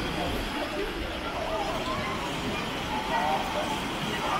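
Crowded beach: many people's voices and children calling out, no one voice standing out, over a steady wash of small waves breaking on a pebble shore.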